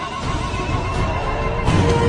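Film score music with horse-like neighing calls of direhorses mixed in. About a second and a half in, the sound grows louder and fuller, as the riders' movement comes in under the music.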